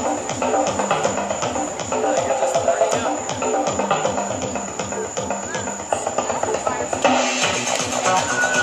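Electronic dance music with a steady, fast beat and a repeating synth melody.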